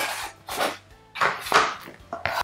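Cardboard packaging sliding and scraping as the inner tray of a small product box is handled and lifted, in three brief bursts.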